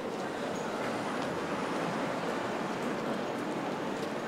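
Busy city street ambience: a steady wash of nearby road traffic with a crowd of pedestrians crossing.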